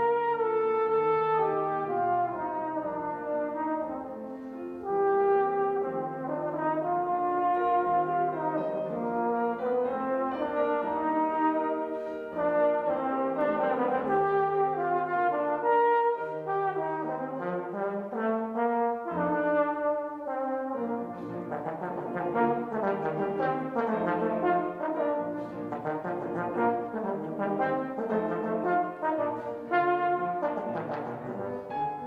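Trombone playing a lyrical classical melody with piano accompaniment, in sustained notes that give way to a faster, busier passage about two-thirds of the way through.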